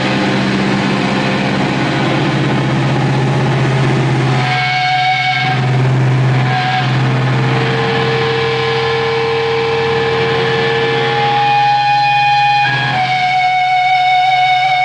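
Distorted electric guitar droning through an amplifier, with long held feedback tones that shift in pitch every few seconds and no drums. The sound changes abruptly near the end.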